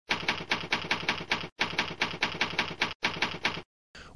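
Typewriter typing in quick, even keystrokes, about five a second, in three runs with short pauses between; it stops shortly before the end.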